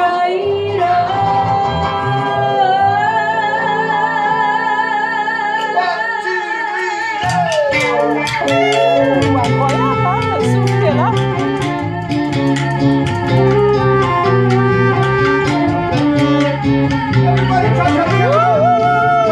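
Live band with singers, saxophone and guitar playing: a long held note with vibrato over sustained chords, then about seven seconds in a bass line and a steady beat come in.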